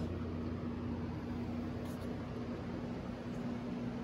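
Steady whir of cooling fans with a low, even hum and a faint steady tone, from a large-format 3D printer standing idle with its heated bed still switched on.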